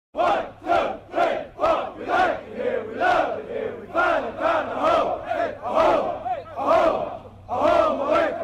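A group of voices shouting a chant in unison in a steady rhythm, about two shouts a second, with a short break near the end.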